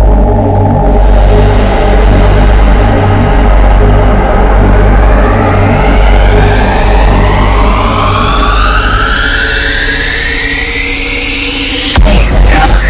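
Neurofunk drum and bass: heavy, dark sub-bass under a riser that sweeps steadily upward through the second half, building to the drop that hits right at the end.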